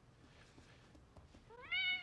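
A domestic cat meows once near the end, a short call that rises in pitch. Before it there is near silence.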